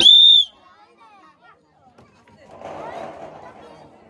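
One short, loud whistle blast, a single high note that ends within half a second, marking the start of a turn in the game; faint crowd murmur follows.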